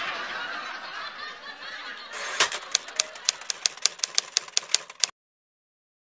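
Typewriter key clicks, about five a second for some three seconds, starting about two seconds in and cutting off suddenly. Before them, laughter.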